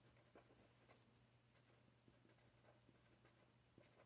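Faint strokes of a felt-tip pen writing on paper, a run of soft short scratches and taps, over a steady low hum.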